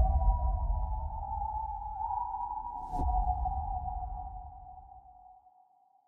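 Trailer title-card sound design: a deep rumble under a sustained high ringing tone, with a short sharp hit about three seconds in. The rumble fades away and the tone lingers a little longer before it dies out.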